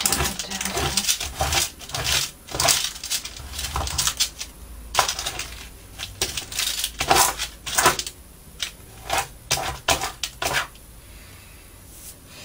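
Bone folder rubbed and scraped in short, uneven strokes over freshly glued paper on a cutting mat, pressing the layers flat. The strokes stop about ten and a half seconds in.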